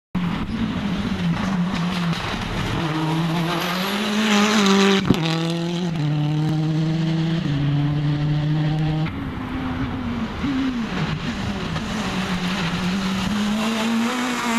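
Rally car engines at speed on a special stage, the engine note holding and then jumping in pitch in steps through the gear changes, with a sharp pop about five seconds in.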